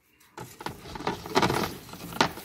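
Two pleated cabin air filters being handled and laid side by side: rustling with light clicks and knocks, starting about half a second in.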